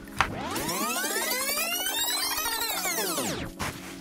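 Electronic background music: a synth sweep that rises and then falls in pitch over about three seconds, over a held low chord, with a sharp click just before it begins.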